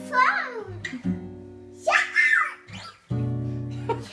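Acoustic guitar strummed in held chords, changing chord about a second in and again near three seconds, while a toddler's voice calls out twice over it.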